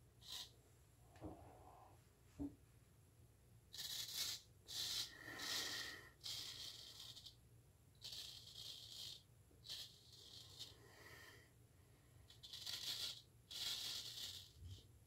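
Straight razor scraping through lathered stubble: a series of short, faint, raspy strokes, most of them from about four seconds in.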